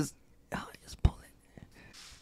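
Soft whispering, with a single sharp click about a second in.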